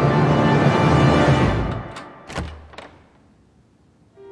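Dark, tense score swells and then fades out about two seconds in, followed by three sharp knocks on a wooden door.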